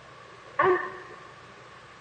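A pause in a man's sermon: one drawn-out spoken word, 'and', about half a second in, over the steady hiss of an old recording.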